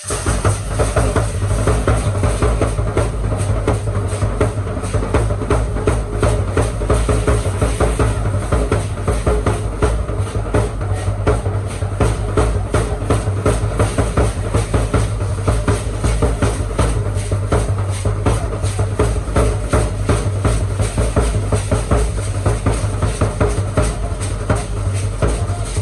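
Percussion accompanying a Mexican ritual danza troupe: a drum beating a fast, steady rhythm, with a bright shaking of hand rattles along with it. It starts suddenly.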